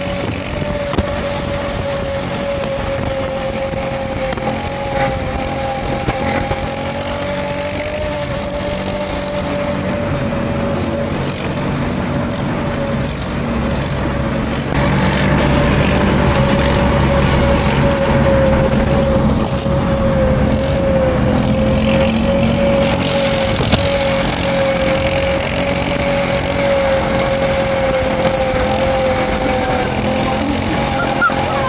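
Steady vehicle and road noise at motorway speed, heard from inside a moving car, with a constant whistling tone. The noise gets louder about halfway through.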